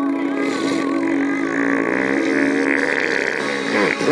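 A beatboxer holds a sustained, buzzing mouth drone over radio music, with a pitch slide in the middle. The clicking beat-box rhythm drops out and starts again right at the end.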